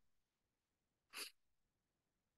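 Near silence, broken a little past the middle by one short breath sound from a person.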